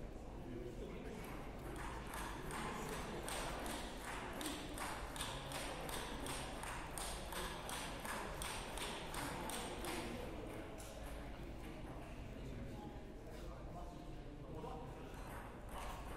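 Table tennis balls clicking off bats and tables from play elsewhere in the hall: a quick, irregular run of light taps that thins out after about ten seconds, over a murmur of voices.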